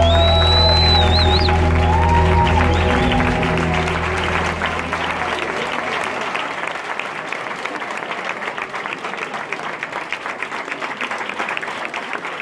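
The dance music's last held chord fades out over the first five seconds or so, while the audience applauds steadily. A shrill whistle sounds near the start.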